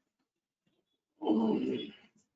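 A short vocal sound, under a second long, starting a little over a second in.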